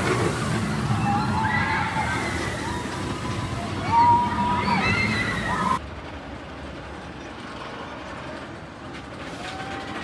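Hollywood Rip Ride Rockit roller coaster train rushing past on its steel track with a loud rumble, riders screaming over it. About six seconds in the sound cuts to a quieter, more distant take of the ride.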